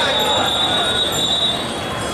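A crowd of bicycles rolling slowly, with one long, steady high-pitched brake squeal that stops about a second and a half in, over the chatter of the riders.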